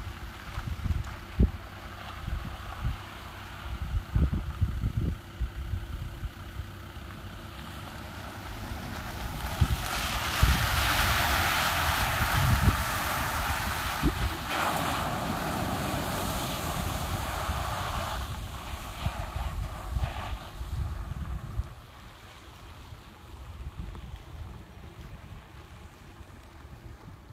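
A Toyota Prado 120 splashing through shallow water: a rushing hiss of spray that builds from about eight seconds in, is loudest for several seconds and fades out about twenty seconds in. Wind rumbles on the microphone throughout.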